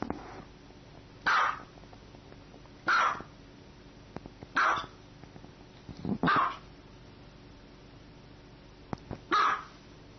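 Small dog barking: five short, sharp, high barks, the first four about a second and a half apart, then a longer pause before the last.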